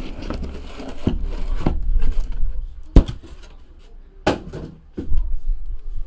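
Cardboard shipping case being handled and shrink-wrapped card boxes lifted out and set down: rustling and scraping with several knocks, the sharpest about three seconds in.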